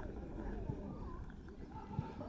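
Football kicked back and forth in a passing drill on grass: a soft thud a little under a second in and a sharper kick near the end, over faint distant voices.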